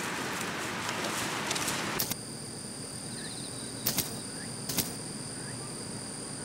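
Leaves rustling as a goat browses on weeds for about two seconds. Then a steady high-pitched insect drone, with a few faint short chirps and a couple of soft clicks.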